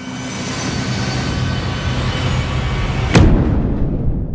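Cinematic logo-reveal sound effect: a swelling rumble and hiss that builds for about three seconds to a single booming hit, then dies away.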